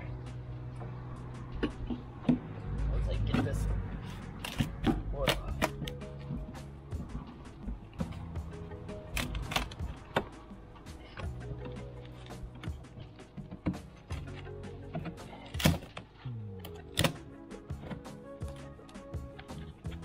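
A pry bar knocking, scraping and clicking against a weathered wooden soffit board as it is worked loose, in an irregular string of sharp knocks with a few louder cracks.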